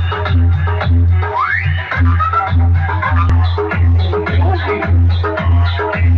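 Loud electronic DJ dance music played through a rig of power amplifiers and horn loudspeakers. A heavy bass beat comes about twice a second, with a rising synth sweep about a second and a half in.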